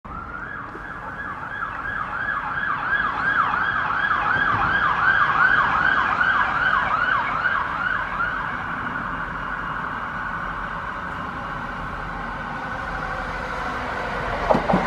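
Emergency vehicle siren on a fast yelp, about three rising-and-falling sweeps a second, loudest around the middle; the sweeps stop after about eight seconds. Underneath, a Class 165 diesel multiple unit runs toward the microphone.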